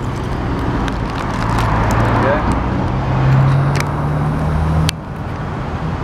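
Roadside traffic: a vehicle engine's low, steady hum builds to its loudest about three seconds in, then a single sharp click near the end and the sound drops back.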